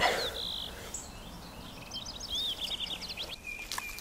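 Birds chirping, with a run of quick, high chirps in the second half. A brief scuffing noise comes right at the start.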